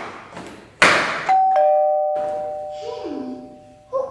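Two-note ding-dong doorbell chime: a higher note, then a lower one a quarter-second later, both ringing on and slowly fading. A sharp thump comes just before the chime.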